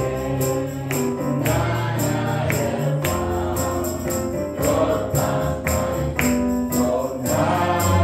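Gospel music: voices singing over sustained bass notes and a steady percussion beat.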